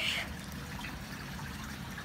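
Steady trickle of water from an aquarium's running filters.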